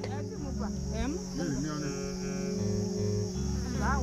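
Insects trilling steadily in one continuous high-pitched band, over soft background music.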